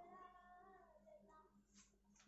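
Near silence, with a very faint drawn-out pitched call during the first second and a half.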